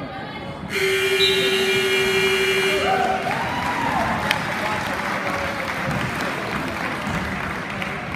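A gym scoreboard horn sounds one steady blast of about two seconds, starting about a second in and cutting off abruptly, signalling that the wrestling match time has run out. Crowd applause and cheering follow.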